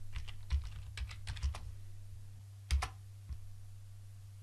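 Typing on a computer keyboard: a quick run of keystrokes, then two louder key presses close together and a last single one, over a steady low hum.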